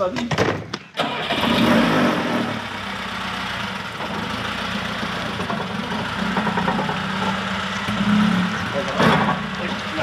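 Lada 2101's four-cylinder engine starting about a second in after a few clicks, then running steadily as the car pulls away.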